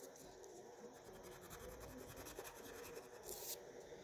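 Faint scratching of a wax crayon rubbed quickly back and forth on paper as a small swatch square is coloured in, with one slightly louder stroke near the end.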